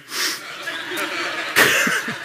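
A man laughing under his breath: breathy, unworded exhalations with a short burst just after the start and a louder one near the end.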